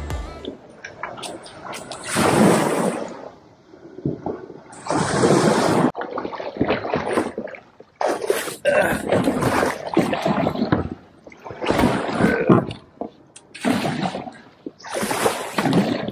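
A kayak launching through shallow surf: irregular surges of water splashing and sloshing against the hull and paddle. Background music cuts off about half a second in.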